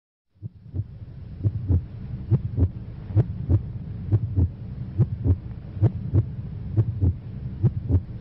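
Low thumps in close pairs, like a heartbeat, about seventy pairs a minute, over a steady low hum. They start suddenly just after a silence.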